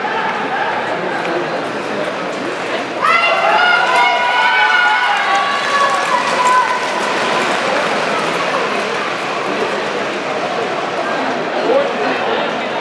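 Continuous talking in a loud voice over steady arena background noise, getting louder about three seconds in.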